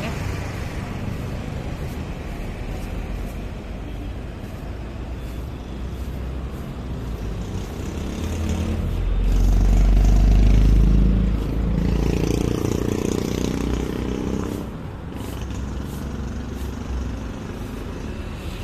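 Road traffic going by steadily, with a louder vehicle passing about halfway through, its low rumble swelling and then fading.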